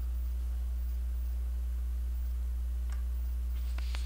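Steady low electrical mains hum picked up by the recording microphone, with a couple of faint clicks near the end.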